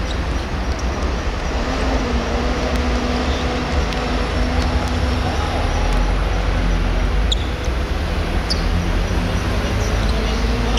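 Steady low rumble of road traffic with a faint, even engine hum running through it, and a few short sharp clicks in the second half.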